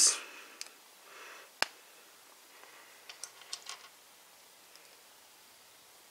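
Small plastic parts of an action figure clicking and rubbing as a foot piece is pushed onto its ankle peg: one sharp click about a second and a half in, then a few lighter ticks a couple of seconds later.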